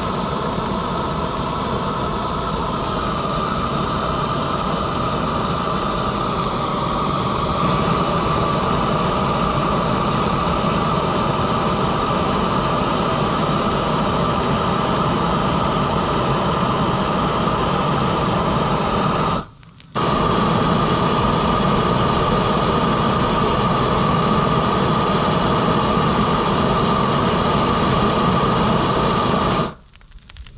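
Propane weed-burner torch running steadily: a loud, even hiss with a faint steady whistle, aimed into a pile of wet brush to get it burning. The sound breaks off for a moment about two-thirds through, then carries on unchanged.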